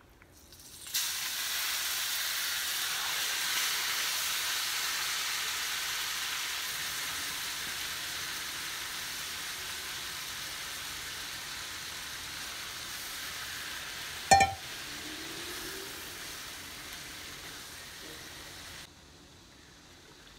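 Marinated chicken pieces dropped into hot butter and oil in a nonstick wok, starting to sizzle loudly all at once and slowly dying down. About 14 seconds in there is a single sharp knock, and near the end the sizzle cuts down suddenly as a glass lid goes on the pan.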